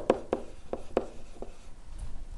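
A stylus writing on a digital writing surface: a string of short, irregular clicks and light scratches as handwritten letters are formed.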